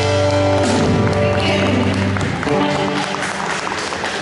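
A live band with electric guitar, bass and drums holding a final chord that dies away about two seconds in, with scattered hand-clapping through the second half.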